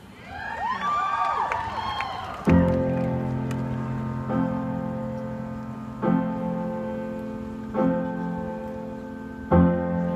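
A few whoops and cheers from the audience, then a solo piano introduction begins about two and a half seconds in: sustained chords, each struck and left to ring, a new one about every two seconds.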